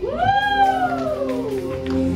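Dance music with one long pitched note that swoops up at the start, then slides slowly down over about a second and a half, over a steady accompaniment.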